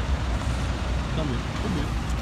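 Steady low rumble of road traffic, with a voice speaking faintly in the second half.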